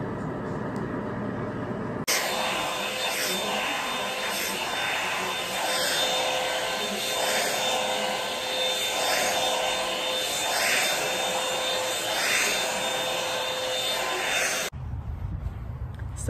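Handheld hair dryer running steadily with a whine, its rush of air swelling about every second and a half as it is passed through the hair during a silk blowout. It starts suddenly about two seconds in, after a lower steady hum from a hood dryer, and cuts off suddenly near the end.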